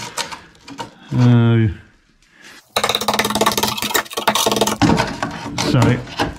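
Screwdriver scraping and prying at the rusted-through steel sill of a classic Mini: a dense, rapid rattling scrape that starts suddenly about three seconds in and carries on. A short laugh-like vocal sound comes about a second in.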